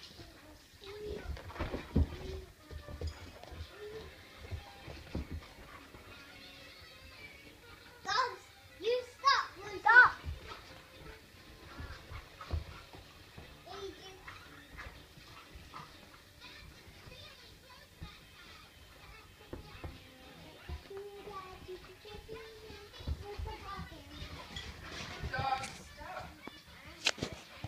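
Two dogs play-wrestling: scuffling and thumps with short growling and whining cries, and a run of loud, high yelps about eight to ten seconds in.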